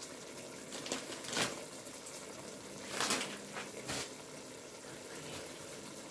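Meat and onions simmering in liquid in a pot: a steady bubbling hiss, broken by a few brief sharp clicks.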